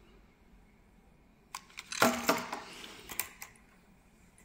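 A few sharp clicks, then a short clatter about two seconds in and a couple more clicks around three seconds, from hands handling a DJI Mini 4 Pro drone that has just been switched on.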